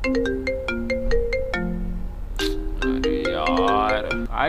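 A mobile phone ringtone playing a melody of short, steady electronic notes that step up and down, repeating.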